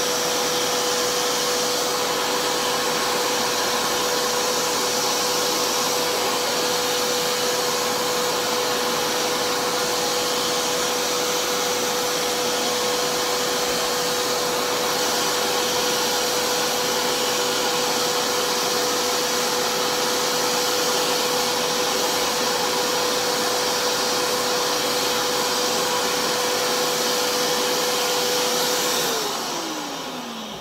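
Carpet cleaner's suction motor running steadily with a constant whine while its hand tool wets the rug. It is switched off near the end, the whine falling in pitch as the motor winds down.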